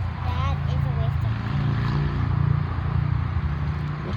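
A low engine rumble from a passing motor vehicle. It builds to its loudest about two and a half seconds in and then eases, with brief soft talk in the first second.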